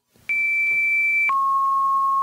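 Electronic test tones from a Webdriver Torso video. A single steady high beep starts about a quarter second in, holds for about a second, then switches abruptly to a lower steady tone.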